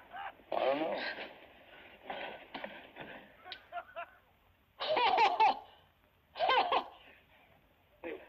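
A person laughing in several separate bursts with wavering pitch, the loudest about five seconds in.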